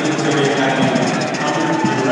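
Brass marching band with sousaphones playing steadily over the noise of a large stadium crowd.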